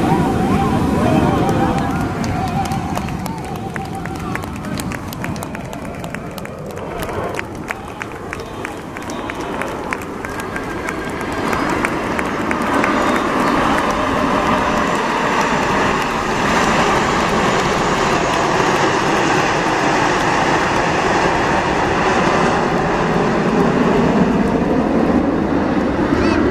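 Jet noise from a formation of Aermacchi MB-339 trainers with single turbojet engines flying past. It grows louder about halfway through and holds, with a slowly shifting, whooshing tone.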